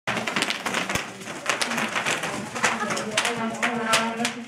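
Bubble wrap popping underfoot as children walk on it: an irregular run of sharp pops and crackles, with one louder pop about a second in.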